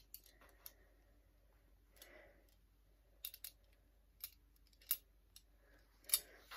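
Faint clicks and taps of a metal belt buckle being handled while a web uniform belt is threaded through it, with a soft rustle about two seconds in and a few sharp clicks in the second half.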